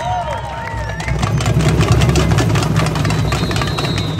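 Samba band percussion, with metal shakers and drums, playing a dense, continuous roll that grows louder about a second in, over crowd voices.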